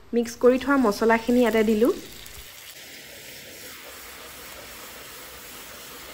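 Whole cumin, bay leaves and whole garam masala sizzling in hot oil in a pan, a steady even hiss. A woman's voice talks over it for the first two seconds.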